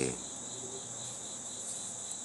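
A steady, high-pitched chorus of crickets, several trills at different pitches running on without a break.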